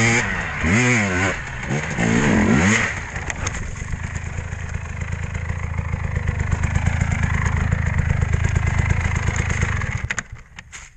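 Dirt bike engine revving in several rising and falling surges on a steep hill climb, then settling to a steady, fast putter at idle with the bike down on its side, cutting out at the very end.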